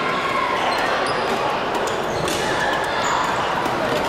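Badminton hall noise: scattered sharp hits of rackets on shuttlecocks and players' footwork on the court floor, over steady background voices.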